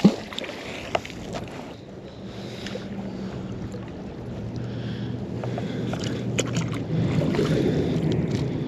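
A thrown magnet fishing magnet landing in the river with a splash, then the rope being hauled back in, over a steady bed of wind and water noise with a low steady hum.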